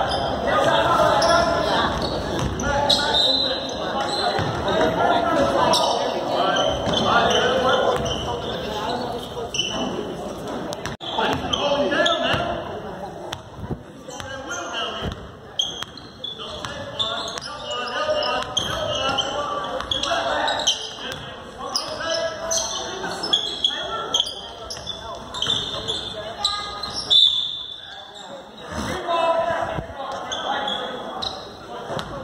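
A basketball being dribbled and bouncing on a hardwood gym floor during live play, the knocks repeating irregularly, mixed with indistinct voices, all echoing in a large gymnasium.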